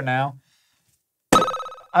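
A quiz buzzer sounding once, just over a second in: a sudden electronic tone that fades within about half a second.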